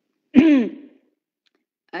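A person clears their throat once, a short, sharp sound with a falling pitch about a third of a second in.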